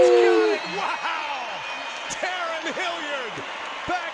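Men's voices: a drawn-out, falling 'ooh' in the first half second, then shorter exclamations and talk.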